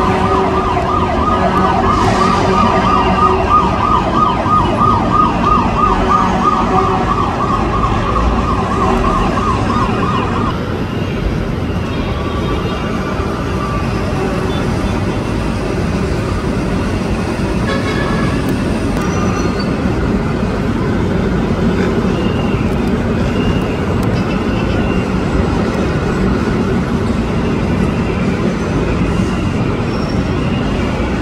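Emergency vehicle siren sounding a fast warbling yelp that cuts off about ten seconds in, leaving a steady din of traffic and city noise.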